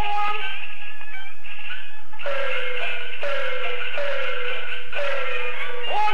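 Old gramophone record of a Peking opera jing (painted-face) singer with the opera band: the voice ends a sung line in the first second or so. The accompaniment then plays an interlude with four evenly spaced strokes about a second apart, each with a falling tone. The singing comes back at the very end.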